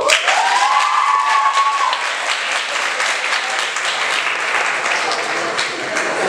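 Audience applauding steadily, with one drawn-out whooping call rising over the clapping in the first two seconds.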